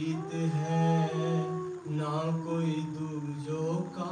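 A man singing a slow, chant-like melody in long held notes that glide between pitches.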